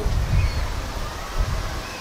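Wind buffeting the microphone: a gusty low rumble with a hiss over it.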